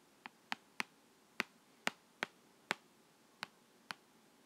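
Hard plastic stylus tip tapping and clicking on a tablet screen while handwriting, about nine sharp, irregularly spaced clicks.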